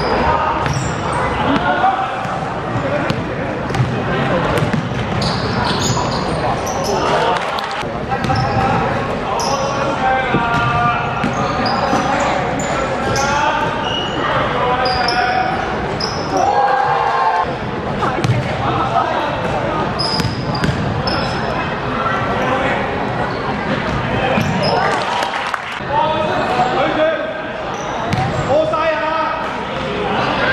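A live basketball game in an echoing sports hall: the ball dribbled and bouncing on the wooden court, short high sneaker squeaks, and players and spectators shouting throughout.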